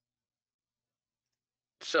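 Dead silence with no background sound, then a man starts speaking near the end.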